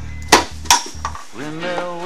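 Two sharp metallic clanks about a third of a second apart, over background music whose melody comes in about a second and a half in.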